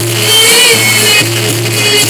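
Group of women singing together with hand percussion, amplified over a loudspeaker system.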